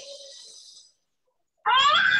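A short, high-pitched, rising vocal cry lasting under a second, heard over video-call audio. It comes about a second and a half in, after a gap of silence.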